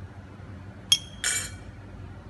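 A metal spoon clinking against a ceramic bowl: a sharp ringing tap about a second in, then a short clatter.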